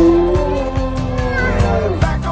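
Rottweiler howling along in long drawn-out notes, the last one bending down in pitch near the end, over music with a steady beat.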